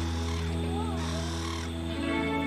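Background music with steady held tones. Over it, in the first second and a half, comes a rough call, either a bird or a voice.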